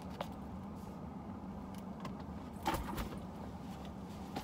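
Handling noises in a car cabin: a few light metallic clicks and clinks from a purse's chain strap, then a cluster of clicks and a soft thump about three seconds in as a bag is set down. A steady low hum runs underneath.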